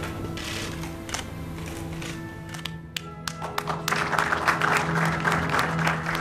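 Music with long held notes plays throughout. About halfway through, a small crowd starts to applaud, and the clapping grows and overlaps the music.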